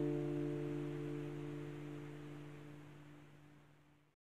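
The song's final D minor chord on guitar ringing out and fading steadily away to almost nothing.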